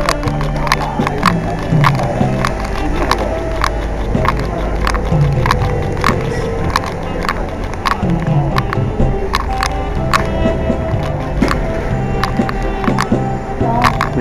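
Background music: a saxophone playing a melody in held notes over a backing track with a steady drum beat.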